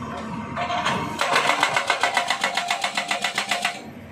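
Hydraulic rock breaker on a Kobelco SK200 excavator hammering rock: a fast, even run of blows, about ten a second, starts about a second in and stops just before the end, over the excavator's running diesel engine.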